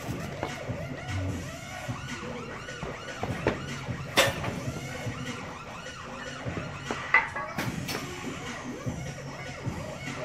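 Weight-room noise: two sharp metallic clanks, about four and about seven seconds in, over a steady background with a repeating wavering, siren-like sound.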